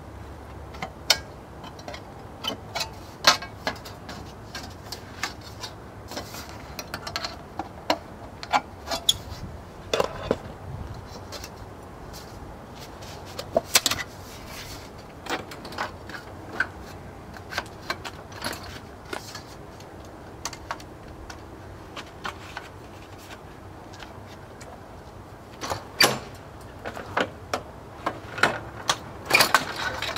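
Thin aluminum flashing being handled and positioned in a sheet metal brake: scattered sharp clicks, rattles and clanks of sheet metal and tool, more frequent near the end.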